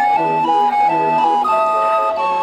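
Hand-cranked barrel organ playing a tune, several flute-like pipe notes held together and changing in quick succession.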